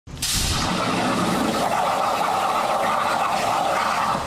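CNC plasma table torch piercing half-inch steel plate to make a hole, used as a drill press: the arc strikes with a sudden burst, then runs as a loud, steady hiss.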